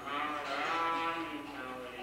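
A voice chanting one long drawn-out tone that wavers slightly in pitch.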